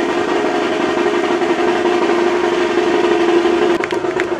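A loud, steady held tone with overtones, unchanging in pitch, over the sound of a band; drum strikes come back near the end.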